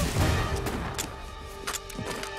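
Film shootout soundtrack: a deep rumble, then a few sharp gunshots spaced through the rest, over a dramatic orchestral score.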